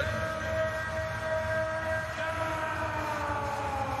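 A man's voice holding one long, drawn-out 'ooh' that sinks slowly in pitch, with steady crowd noise beneath.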